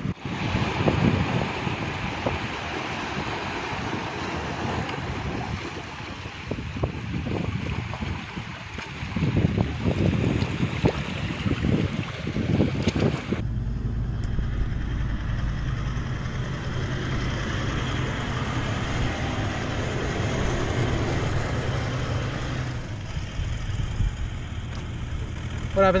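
Wind buffeting the microphone over surf washing on rocks. About halfway through this gives way to the steady low rumble of a four-wheel drive's engine and tyres driving on a dirt track.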